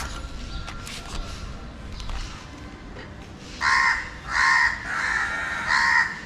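A bird calling four times in quick succession in the second half, short harsh calls a little over half a second apart.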